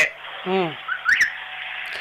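Telephone-line hiss with a man's short falling hesitation sound about half a second in, then a brief high rising chirp just after one second.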